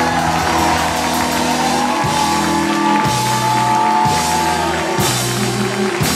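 Live rock band playing loudly on electric guitar, bass and drum kit, with a held high melody line that bends up and down in pitch over strong beats about once a second.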